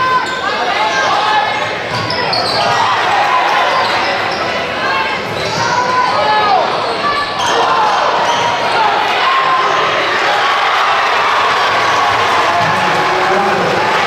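Basketball game sounds in a large, echoing gym: the ball bouncing on the hardwood court, sneakers squeaking as players cut and stop, over a steady hubbub of crowd and player voices.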